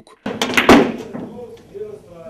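Cue striking the cue ball and heavy Russian pyramid billiard balls clacking together: a few sharp clacks in quick succession about half a second in, ringing off in the room.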